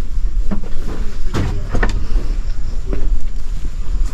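Low, steady rumble of wind and handling on a handheld camera's microphone while walking, with a few knocks and thuds.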